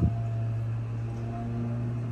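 A steady low hum, with no other distinct sound.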